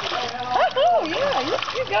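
Water splashing and sloshing in a whirlpool as babies play in it. Over it, from about half a second in, a high voice swoops smoothly up and down in pitch for about a second and a half.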